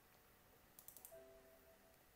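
Near silence, with a few faint clicks a little under a second in, followed by a faint steady tone lasting under a second.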